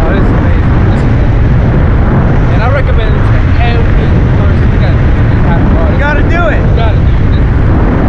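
Steady, loud wind rushing over the camera microphone during a descent under an open parachute, with faint voices showing through it about three seconds in and again about six seconds in.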